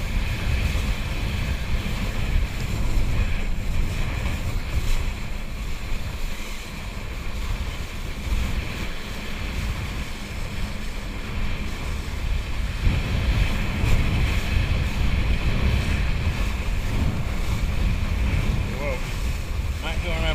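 Wind buffeting the microphone in a heavy, uneven low rumble that dips and swells, over a steady hiss of water.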